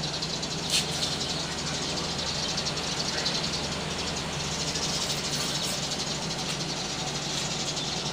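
Small ground firecrackers burning on concrete: a steady fizzing crackle, with one sharper pop just under a second in.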